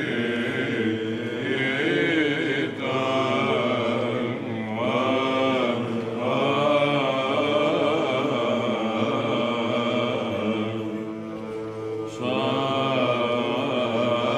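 Greek Byzantine chant sung by a male monastic choir: a melody moving above a steady low held note (the ison), with brief breaks between phrases.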